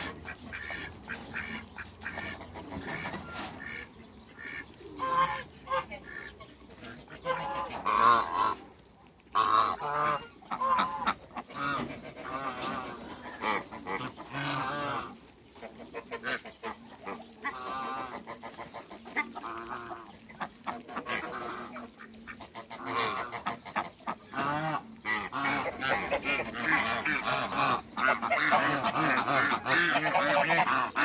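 Domestic ducks and Egyptian geese calling repeatedly in short calls. The calling grows denser and louder over the last few seconds.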